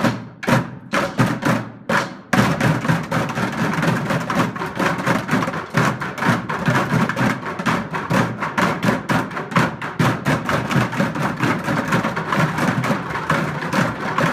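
A group of children drumming with wooden drumsticks on orange plastic buckets. There are a few separate strikes at first, then from about two seconds in a fast, busy stream of hits.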